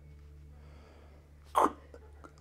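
A single short, sharp vocal burst from a person, like a sneeze or forceful breath, about one and a half seconds in, over a steady low room hum.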